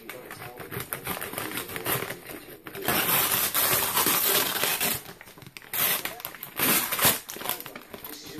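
A mail package being handled and torn open by hand: crinkling packaging with a long, loud stretch of tearing and rustling from about three to five seconds in, and a shorter one near six seconds.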